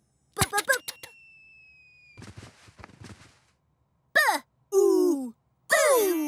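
Animated-cartoon sound effects: a quick rattle of clicks with a thin, slowly falling whistle, then a soft whoosh. In the second half, cartoon characters give three short sighing 'ooh' sounds, each falling in pitch.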